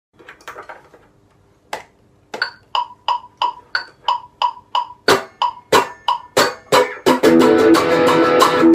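A fast, evenly spaced metronome click, about three clicks a second, counting in. About seven seconds in, a semi-hollow electric guitar starts strumming chords in time.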